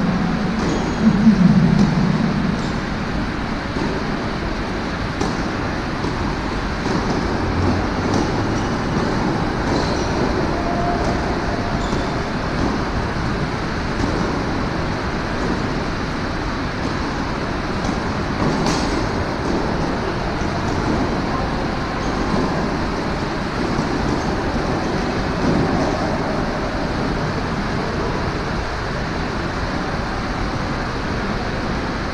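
Steady rushing noise of an indoor tennis hall, with a few faint knocks of a tennis ball being struck during a rally.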